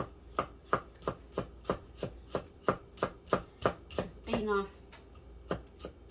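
Knife chopping food on a wooden cutting board, in steady strokes about three a second. The chopping breaks off briefly a little after four seconds in, then starts again.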